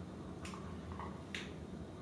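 Marker pen strokes on a whiteboard: two short, faint scratches about half a second and a second and a half in.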